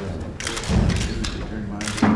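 Men's voices talking over one another in a room, broken by a heavy low thump about three-quarters of a second in and several sharp clicks, one more near the end.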